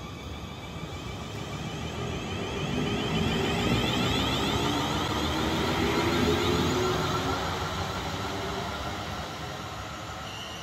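South Western Railway electric multiple-unit train pulling out of the station: the whine of its traction motors climbs in pitch as it speeds up, mixed with wheel and running noise. The sound swells to its loudest in the middle as the carriages pass, then fades as the train draws away.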